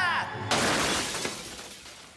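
Upright vacuum cleaner crashing and breaking: a sudden shattering crash about half a second in that dies away over about a second and a half.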